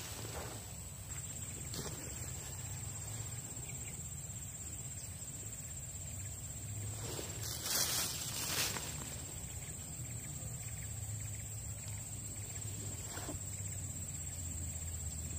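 Steady, faint outdoor ambience with a thin, high-pitched insect drone running under it, and two brief rustles about eight seconds in.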